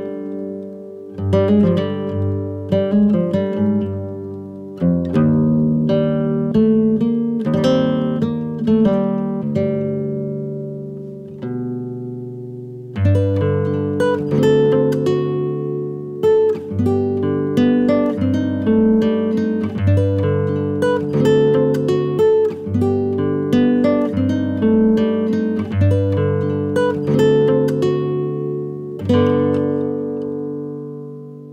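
Background music of plucked acoustic guitar, notes ringing and fading one after another, with a short lull a little before halfway before the playing picks up again.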